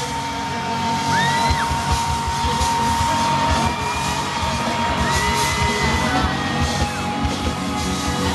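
Live pop band music in an arena, with one long steady high note held for about six seconds over the band and the crowd yelling.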